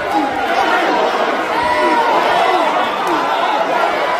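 Boxing arena crowd yelling and talking over one another: many overlapping voices at a steady, fairly loud level, with no single voice standing out.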